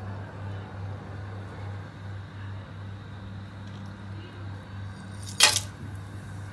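Whole spices tipped from a plate into oil in a kadhai: one short, sharp noise about five and a half seconds in, over a steady low hum and faint hiss.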